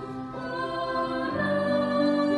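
School choir singing slow, held chords, moving to a new chord and growing louder about one and a half seconds in.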